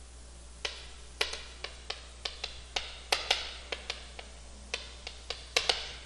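Chalk striking a chalkboard while a line of handwriting is written: a quick, irregular run of sharp clicks and taps, some twenty of them, starting about half a second in.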